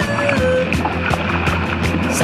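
Soundtrack music with a steady drumbeat and sustained bass; a held melody note slides down within the first second.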